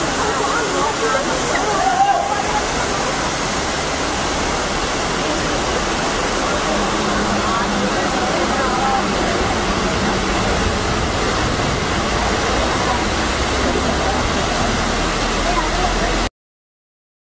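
Waterfall rushing steadily, with people's voices indistinct behind it.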